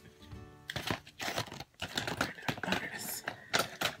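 Small hard objects clicking and clattering in a quick, irregular run as someone rummages through cosmetics and nail supplies for a tube of nail glue.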